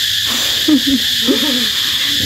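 A person's voice making a few short sounds with sliding pitch, over a steady high-pitched hiss.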